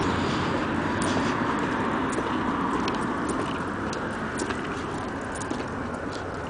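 Steady road-traffic noise from a freeway, slowly fading, with faint scattered clicks over it.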